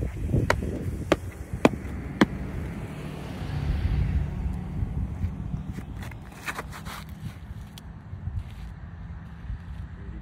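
A disc golfer's footsteps walking onto the tee, four sharp steps about half a second apart, then a quick cluster of scuffs and steps as he runs up and throws. A low rumble swells around the middle.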